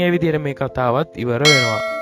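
A bell struck once about one and a half seconds in, ringing with many clear overtones and fading slowly; a man's voice talks just before it.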